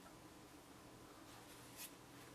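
Near silence with a faint steady hum, broken near the end by one brief scrape as the wooden sculpture base is turned round.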